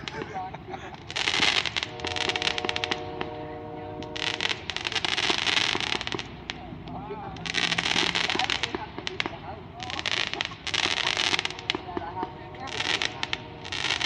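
Aerial fireworks going off overhead in a run of crackling bursts, each lasting a second or so, coming every second or two.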